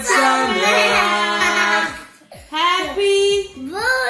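A child singing in long held notes, with a short break about two seconds in before the singing resumes.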